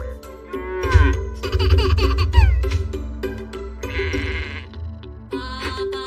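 Children's nursery-rhyme song with cartoon farm-animal calls falling in pitch over the backing music.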